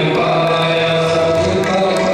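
Sikh kirtan: voices chanting a hymn over sustained harmonium chords, with tabla strokes.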